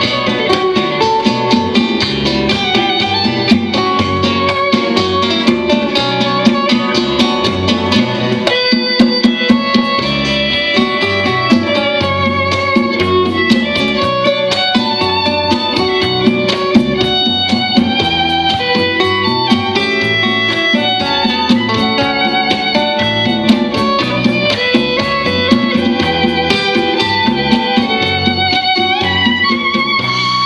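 Live acoustic band playing an instrumental passage: several acoustic guitars strumming and picking, with a violin melody and hand drums keeping a steady beat.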